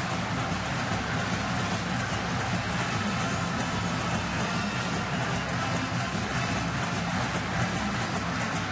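A stadium marching band playing over steady crowd noise.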